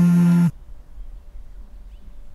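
A mobile phone on vibrate buzzing in long pulses, the buzz stopping abruptly about half a second in as the call is picked up, then quiet room tone.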